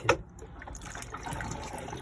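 Cassette toilet's electric flush running: the pump sends a steady stream of water around the bowl.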